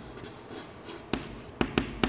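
Chalk writing on a chalkboard: a few short, sharp tapping and scraping strokes as a word is written, clustered in the second half.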